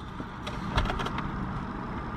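Steady low background noise inside a car, with a few faint clicks and rustles about half a second to a second in.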